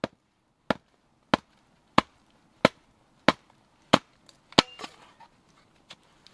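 Hatchet chopping firewood into kindling: eight sharp, evenly spaced blows, about one and a half a second. The last blow is followed by a brief crackle.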